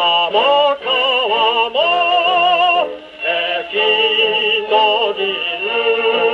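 A 1942 Japanese 78 rpm shellac record played on a wind-up Columbia G-241 portable gramophone through its acoustic soundbox: singing with vibrato, in phrases broken by short breaths. The sound is narrow, with no deep bass and little top.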